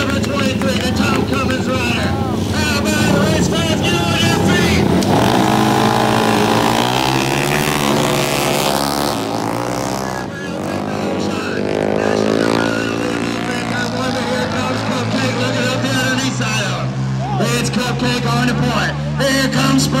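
Flat-track racing motorcycles, one of them a Harley-Davidson XR750 V-twin, running at the start and then accelerating hard away. About five seconds in, the engine pitch climbs steeply. It dips briefly near ten seconds, then climbs again and settles into a steady run.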